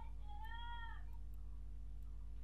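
An animal's high, drawn-out call, rising and then falling in pitch, ending about a second in, just after the tail of a first call. A steady low hum runs underneath.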